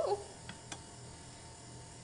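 A woman's brief "ooh" at the start, then quiet room tone with two faint short clicks.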